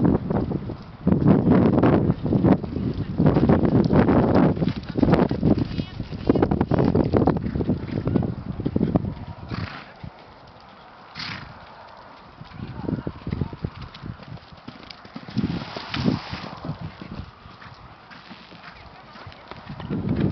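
A horse cantering around a sand show-jumping arena, its hoofbeats heard with people's voices in the background. The sound is loudest through the first half.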